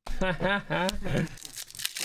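Foil wrapper of a trading-card pack crinkling and tearing as it is ripped open, under a man talking and laughing.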